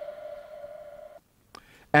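Held electronic tone with overtones, the tail of a short music sting, fading and then cutting off suddenly a little over a second in.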